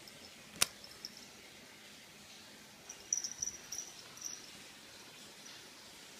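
Small sounds of a cat at play with a rubber band: one sharp snap about half a second in, then a brief flurry of faint, high scratching about three seconds in.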